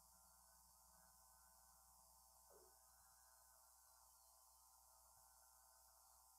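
Near silence: only a faint, steady hiss and low hum, with one tiny blip about two and a half seconds in.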